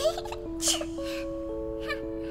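Soundtrack music: a slow melody of held notes changing about every half second, with three short squawk-like cartoon sound effects at the start, in the middle and near the end.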